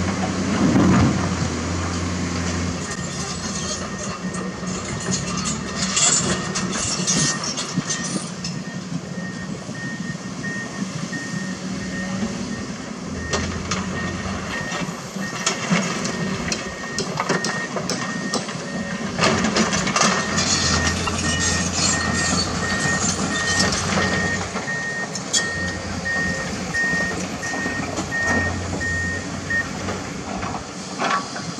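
Komatsu PC200 and Kobelco SK200 hydraulic excavators working in rock, the diesel engines' low drone swelling and easing in spells under load, with repeated knocks and clatters of bucket and stones. From about a quarter of the way in a backup alarm beeps steadily at a high pitch, stopping just before the end.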